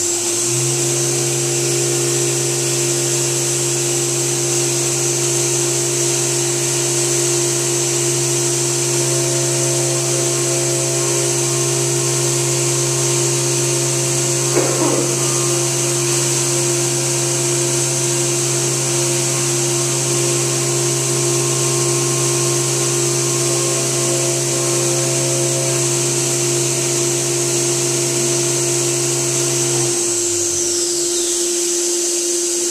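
Milltronics CNC mill running a chamfer bit on a metal carb spacer under flood coolant, a steady machine drone with a hiss of coolant spray. The spindle's whine rises at the very start and falls away at the very end.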